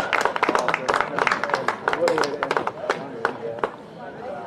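Spectators clapping by hand with a few shouting voices; the clapping thins out toward the end.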